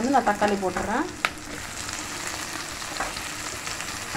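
Shallots, garlic and dried red chillies sizzling in hot oil in a pan, a steady hiss. A voice speaks over it for about the first second, and there is one sharp tick a little over a second in.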